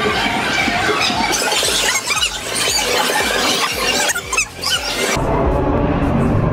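High-pitched squealing and shrieking from people as someone rides a mechanical bull, over loud music. The sound cuts off abruptly about five seconds in.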